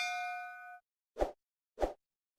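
A notification-bell ding sound effect rings out and fades within the first second. It is followed by two short pops about two-thirds of a second apart.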